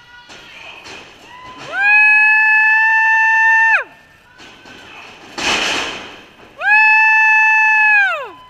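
A loud horn sounds twice, each blast about two seconds long at one steady pitch, sliding up as it starts and down as it cuts off. A short burst of noise comes between the two blasts.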